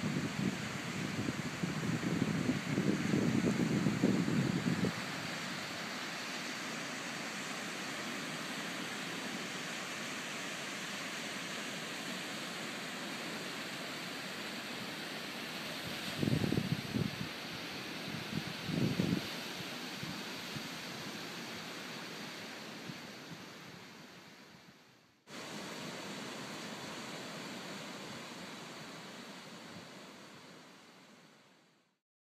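Steady hiss of surf and wind on an open sandy seashore, with low gusts of wind buffeting the microphone in the first few seconds and twice briefly later. Near the end the sound fades away, starts again, and fades once more.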